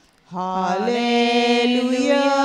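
A voice singing a slow devotional chant, coming in after a short pause and holding long notes, stepping up in pitch about a second in.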